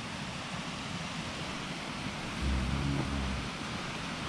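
Steady rushing outdoor noise, like wind on the microphone or distant running water, with a short low hum from a man's voice about two and a half seconds in.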